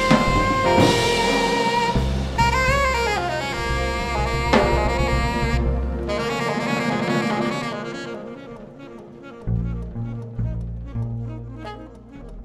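Live jazz: saxophones playing held and sliding notes over drums and double bass. After about eight seconds the horns thin out, leaving double bass notes as the music gets quieter.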